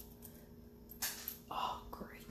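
A faint sharp click about a second in, then a brief softer sound: a tiny watch-band release lever popping loose and dropping, over a low steady hum.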